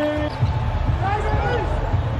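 Basketball game sounds on a hardwood court: sneakers squeaking in short chirps through the second half of the clip, over the thud of a ball bouncing.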